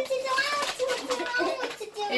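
Talking voices, a child's among them, overlapping in a small room.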